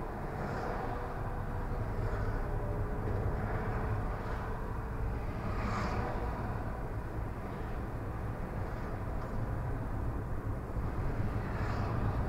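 Steady engine and tyre noise of a car driving on a city road, heard from inside the cabin.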